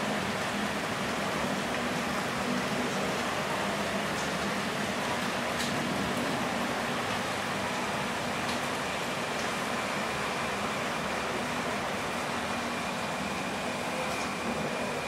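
Steady rushing noise during the ride down in an Otis hydraulic glass elevator, the car's running noise blended with the mall's fountain water. A low hum fades out in the first few seconds.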